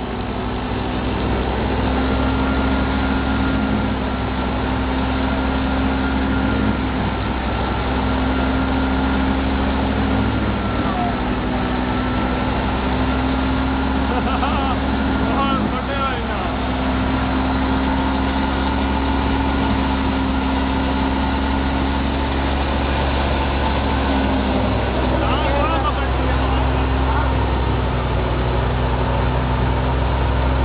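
An engine running steadily at an even speed.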